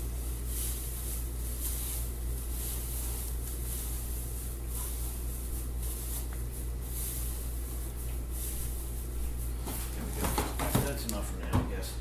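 Shredded newspaper pouring from a bin into a plastic mixing bucket: a soft, steady rustling hiss. A few knocks near the end as the bin is handled and set down.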